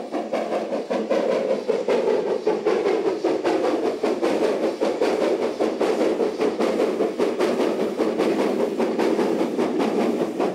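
War Department Austerity steam locomotive working hard with a train, its exhaust beating in a rapid, even rhythm over the rumble and clatter of the train on the rails, growing louder over the first second or two as it approaches.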